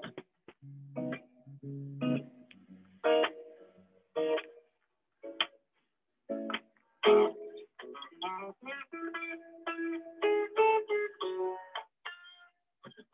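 A guitar being played in separate chords and plucked notes at an uneven pace, with short pauses between them. The sound cuts to silence in each gap, as a video call's noise suppression does.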